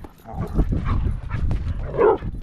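Dogs barking at a coyote that is circling the camp, over a steady low rumble.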